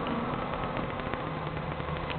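Steady background hiss with no distinct events, in a pause before guitar playing begins.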